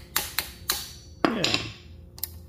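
Hammer tapping on a valve spring compressor clamped over a compressed valve spring on a cast-iron cylinder head, knocking the spring retainer loose so the valve keepers can be removed. Three quick sharp taps come about a quarter second apart, then a louder knock a little past a second in.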